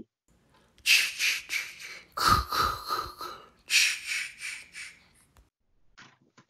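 Three breathy, whispered bursts, each about a second long and trailing off: a horror-style sound effect laid over a video transition.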